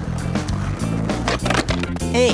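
A skateboard rolling along a paved path, its wheels running over the surface, under background music with a steady bass line.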